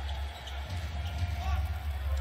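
Basketball being dribbled on a hardwood court, over a steady low hum in the arena.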